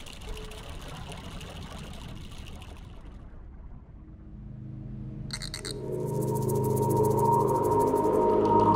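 Underwater film sound design: a fizzing hiss of bubbles fades out after about three seconds. An ambient score then swells in, with low sustained tones and a brief high chime, and grows louder to the end.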